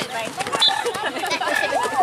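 Several young children's voices calling out and chattering during play on a field.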